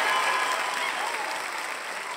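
Applause with a few faint cheers, slowly fading out.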